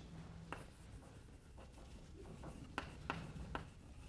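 Chalk writing on a blackboard: faint scratching with a few sharp taps of the chalk, one about half a second in and a cluster near the end.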